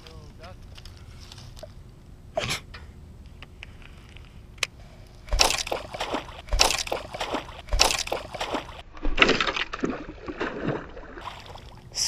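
Water splashing and sloshing at the surface in irregular bursts from about five seconds in, as a fish hooked on the line thrashes near the bank.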